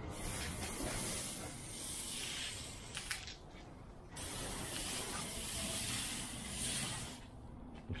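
Low-pressure soft-wash spray wand fed by a 12-volt pump, hissing as it sprays cleaning solution onto brick. It sprays in two spells of about three seconds each, with a pause of about a second between them.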